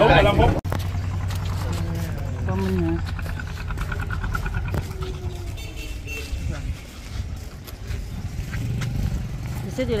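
A small engine running steadily at low revs, with people talking in the background.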